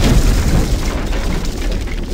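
A deep boom, its low rumble slowly fading away.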